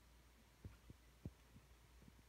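Near silence: a low steady hum, with a few faint, short low thumps in the second half.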